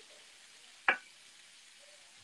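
Buffalo cauliflower frying in a cast-iron skillet, a faint steady sizzle while a wooden spoon works through it. One sharp tap stands out about a second in.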